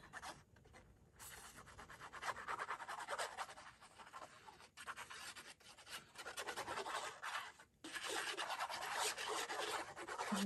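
The fine metal tip of a squeeze bottle of liquid glue scratching and rubbing across cardstock as lines of glue are drawn on the back of a paper panel. It comes in several stretches of quick, fine strokes with brief pauses between.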